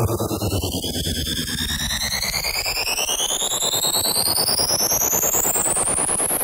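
Synthesized riser effect: several tones gliding steadily upward in pitch over a dense, fluttering noise bed, with a sweep falling from high to low through the noise over the first few seconds.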